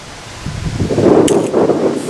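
Wind gusting across the camera microphone: a loud, rough rushing buffet that swells up about half a second in and carries on, with a brief faint click in the middle.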